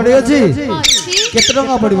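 A young girl performer's voice in stylized stage dialogue, breaking into shrill, high swooping squeals about a second in.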